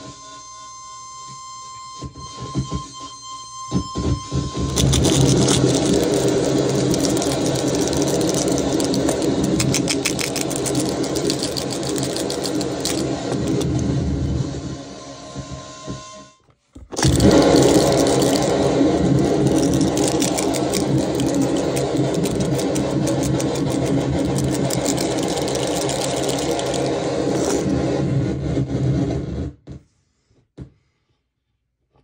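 Harsh noise from a Death Metal distortion pedal feeding a Mantic Hivemind fuzz (a DOD Buzzbox clone): a faint steady tone with scattered crackles at first, then dense, loud distorted noise from about five seconds in. It cuts out briefly just past the middle, comes back and stops just before the end.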